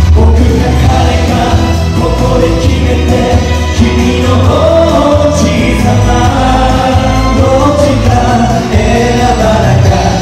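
A male pop vocal group singing together over a backing track with a heavy, steady bass; the voices come in just after the start, following the instrumental intro.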